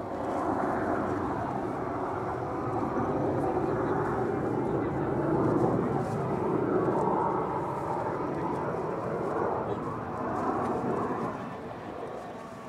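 An F-15J fighter's twin turbofan engines make a steady rushing jet noise as it flies past. The noise swells to its loudest a little past the middle and eases off near the end.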